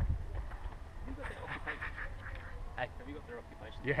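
Low rumble of wind on the microphone, strongest at the very start and then easing, under faint voices in the background; a single spoken "yeah" comes at the end.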